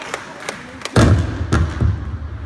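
A few loud, irregular low thuds, typical of a handheld microphone being bumped or handled, after a thin patter of the last scattered claps from the audience.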